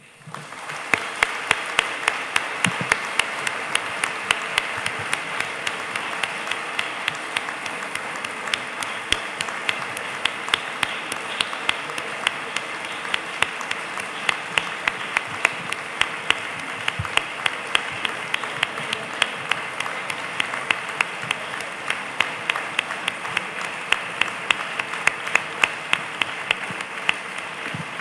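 Audience applauding steadily for a long stretch, with louder claps from close by standing out.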